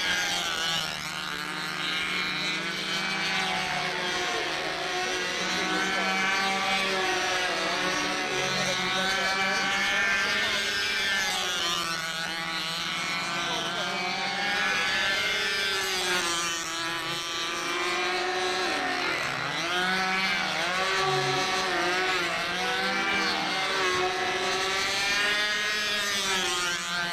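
The two small model engines of a four-wing (quadruplane) control-line model plane running steadily as it flies in circles. Their pitch keeps rising and falling as the plane passes round the circle.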